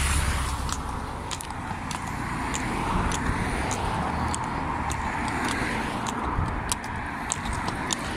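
Road traffic on the adjacent road: a steady rush of tyres and engines, with a car's rumble passing about a second in and again around three seconds. Short, sharp clicks come at irregular intervals throughout.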